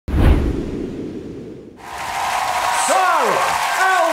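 A deep whoosh with a low boom, the logo sting of a TV show ident, fading away over about a second and a half. Then the noise of a large arena audience comes in, and near the end a singer's voice swoops down in pitch in a breathy sigh.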